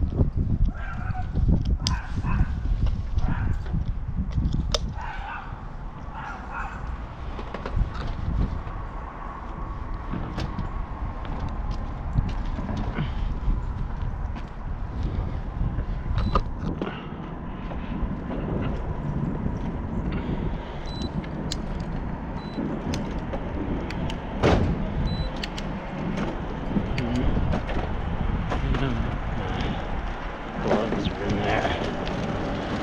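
Wind buffeting the microphone of a bicycle-mounted action camera as the bike rides along a street, with tyre noise and scattered clicks and rattles from the bike. A faint steady whine runs for a stretch in the middle.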